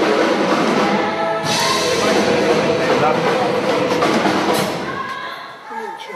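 Live band music from the stage with a loud, dense wash of sound over it, which drops away about five seconds in.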